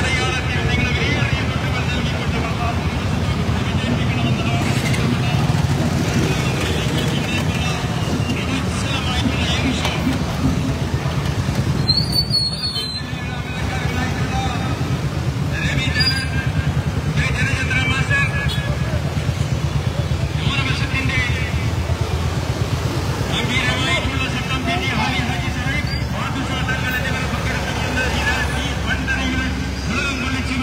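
Many motorcycle and scooter engines running together in slow traffic, a steady low drone, with raised voices coming and going over it.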